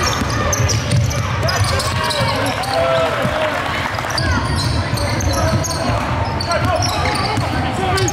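Basketball being dribbled on a hardwood court, its bounces knocking repeatedly, with sneakers squeaking on the floor and players calling out.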